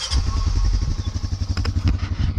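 A small engine starting up and running loudly with a rapid, even low putter.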